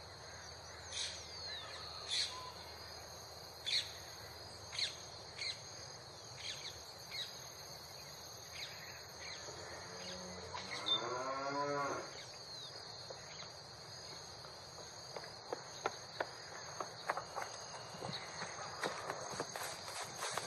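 Farmyard ambience: a cow moos once, about two seconds long, around the middle, over short high chirps and a steady high insect buzz. Light clicks come thick and fast near the end.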